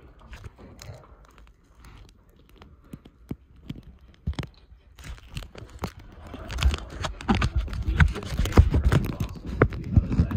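Handling noise against a plastic kayak: knocks, rubbing and heavy thumps of the camera and paddle on the hull. Sparse clicks at first, then louder and denser from about halfway.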